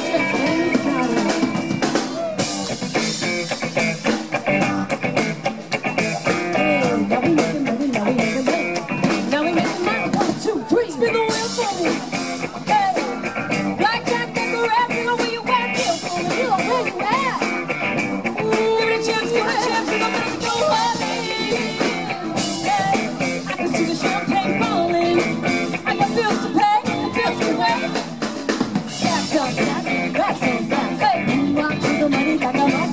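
Live band playing outdoors: electric guitar, keyboard and drum kit, with a steady drum beat throughout.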